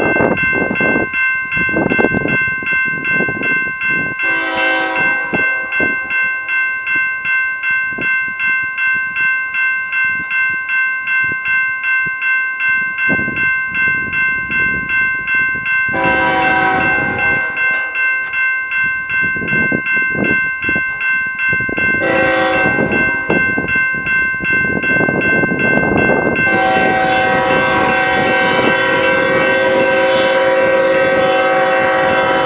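BNSF diesel locomotive's air horn sounding four times as the train approaches: a blast about four seconds in, a longer one at about sixteen seconds, a short one at about twenty-two seconds and a long one starting near the end. Under the horn a grade-crossing bell dings steadily about twice a second.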